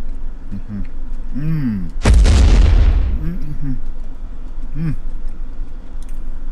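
A man humming short rising-and-falling 'mmm' sounds with his mouth closed while chewing. About two seconds in, a sudden loud burst of noise that fades away over about a second.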